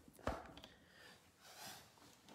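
Handling noise from a phone being set in place: a short knock about a quarter second in, then faint rustling and breath over quiet room tone.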